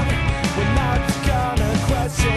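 Rock band playing: guitar over a steady drum beat.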